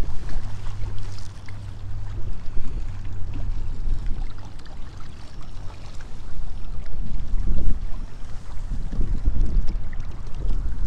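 Wind buffeting the microphone outdoors: a loud, uneven low rumble that rises and falls in gusts.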